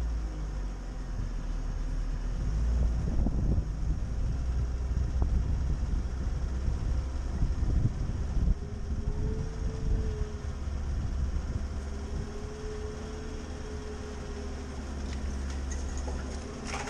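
Chevrolet Niva driving slowly along a rutted forest track, heard from a camera on the bonnet: a steady engine with a deep rumble and irregular jolts from the bumps. A faint whine rises and falls through the second half.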